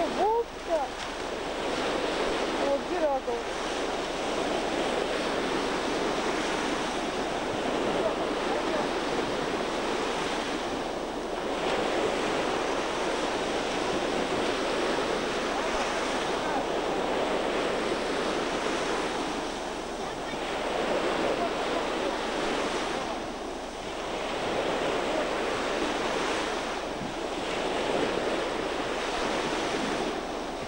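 Sea surf breaking on a sandy beach, a steady rush that swells and eases every few seconds, with wind buffeting the microphone.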